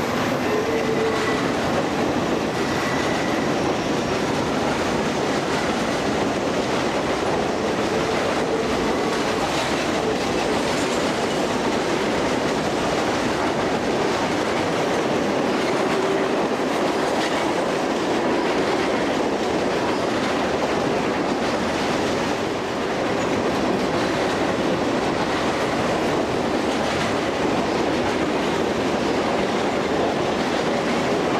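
Freight train cars rolling steadily past at close range, steel wheels running on the rails, with a constant level throughout.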